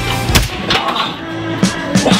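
One loud, sharp slap of an open hand on a bare back, over background music.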